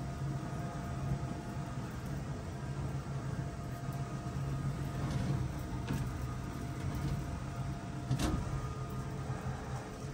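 Insulation blowing machine running steadily, with a low hum and air and loose-fill insulation rushing out of the hose. A few faint clicks come through, the clearest about eight seconds in.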